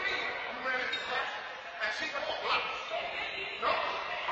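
Indistinct talking between people, with two sharp knocks, about two seconds in and near the end.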